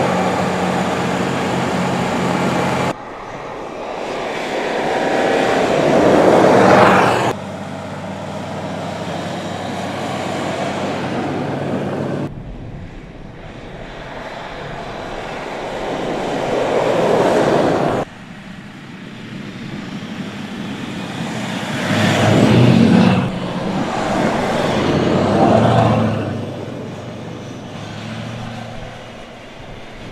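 Mercedes-Benz GLS SUV driving on snow: engine running with tyre and snow noise that swells and fades as the vehicle passes, several times. The sound cuts abruptly between shots.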